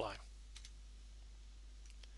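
Two faint clicks of a computer mouse or keyboard about half a second in, with another fainter one near the end, over a steady low electrical hum.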